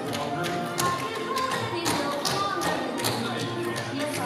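Tap shoes striking a wooden stage floor in quick, irregular clicks over recorded show-tune music.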